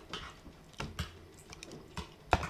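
Eating sounds close to the microphone: about five light, irregular clicks and taps, unevenly spaced, with the most distinct near the start and around one second in.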